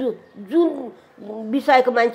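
An elderly woman's voice: a short drawn-out vocal sound that rises and then falls in pitch, followed about a second later by her talking again.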